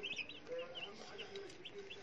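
A box of day-old white broiler chicks peeping: many short, high cheeps overlapping throughout.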